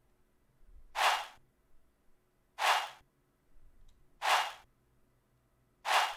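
A single percussion sample from a trap beat playing solo in FL Studio: a short hissy hit, repeated three times about a second and a half apart, with a fourth starting at the end.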